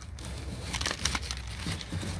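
Clear plastic bag crinkling on and off as hands open it and pull out a lotus tuber.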